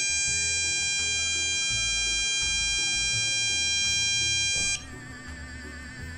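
A long, steady electronic beep that cuts off suddenly near the five-second mark, followed by a quieter warbling electronic tone.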